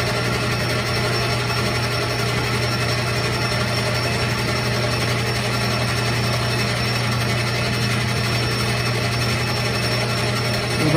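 Metal lathe running steadily with a low, even hum as its chuck spins a metal rod and the tool bit is fed along, turning the rod down in diameter.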